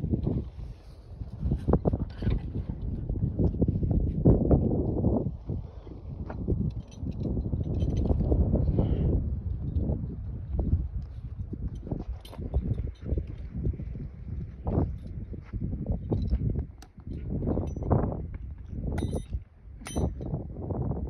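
Footsteps and rustling as someone walks a rope line out through the brush, with irregular low rumbling handling and wind noise on the microphone and scattered small clicks.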